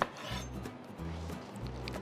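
Chef's knife cutting small tomatoes on a wooden cutting board: light scraping with a few faint taps of the blade on the board, over soft background music.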